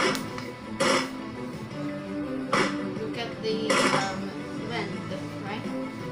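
Rifle shots, four sharp reports at uneven intervals, over background music.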